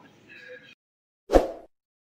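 A single short pop sound effect about a second and a half in, sweeping quickly from low to high, as the subscribe-button animation appears. Before it, the faint tail of a man's voice, then a moment of dead silence.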